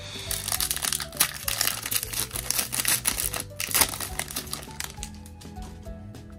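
Foil wrapper of a Pokémon TCG booster pack crinkling as it is opened, densest over the first four seconds and thinning near the end. Background music plays underneath.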